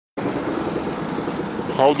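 Steady outdoor background noise with a low hum, and a man's voice beginning near the end.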